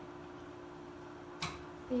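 A gas range's burner igniter gives one sharp click as the knob is turned, over a low steady hum.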